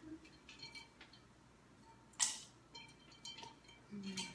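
Light clinks of a metal spoon against glass as the margarita is stirred, with one short, louder scrape about two seconds in.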